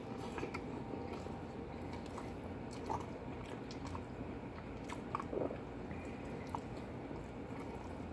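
A person quietly chewing a bite of a hamburger on sliced bread, with a few short, soft wet mouth clicks scattered through.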